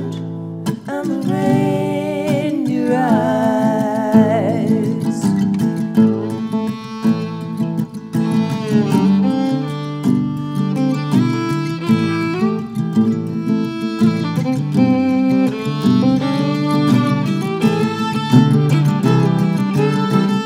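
Acoustic guitar strummed under a bowed fiddle playing an instrumental break in a folk song.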